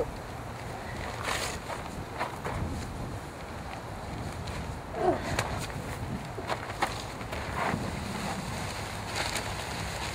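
A heavy paper sack of Portland cement being handled and tipped into a plastic tub: paper rustling and a few short knocks over steady wind noise on the microphone.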